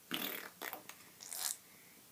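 Short breathy bursts of a girl's stifled laughter: three puffs of breath, the first the loudest and a hissy one near the end.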